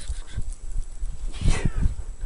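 A cat caught in deep snow meowing: one short, hoarse, falling call about one and a half seconds in, over a low rumble on the microphone.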